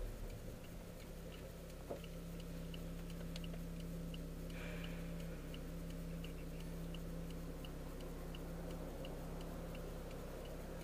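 Car turn-signal indicator clicking steadily, about two to three light ticks a second, over the steady low hum of the engine heard inside the cabin.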